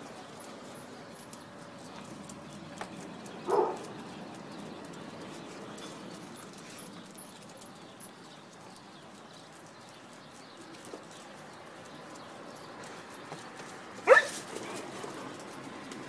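Dog barking twice, briefly: once about three and a half seconds in and again near the end, the second louder.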